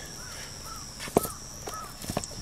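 A crow giving several short caws, the loudest a little past the middle.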